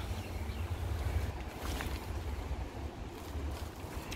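Low, steady rumble of wind buffeting the microphone, with a couple of faint ticks.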